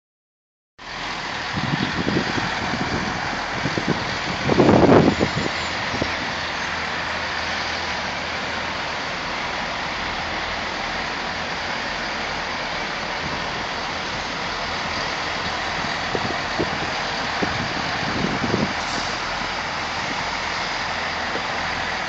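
Two coupled Class 165 diesel multiple units pulling into the platform and coming to a stand, their underfloor diesel engines running under a steady rushing noise. A louder surge comes about five seconds in.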